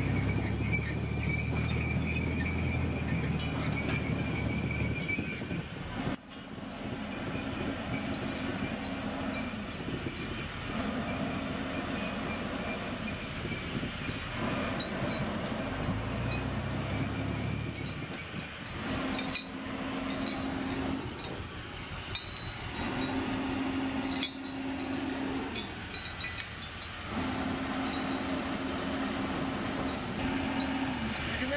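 M88A2 Hercules recovery vehicle's diesel engine running as it is guided into position, with the heavy hoist chain hanging from its boom clinking as it sways. The engine swells to a deeper rumble near the start and again about halfway through, and a steady hum comes and goes in stretches of a few seconds.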